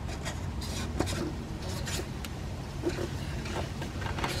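Plastic oil filter housing cap being turned by hand against its aluminium housing: faint rubbing and scraping with scattered small clicks, one sharper tick about a second in. The cap's threads are not starting evenly, so it is not going on smoothly.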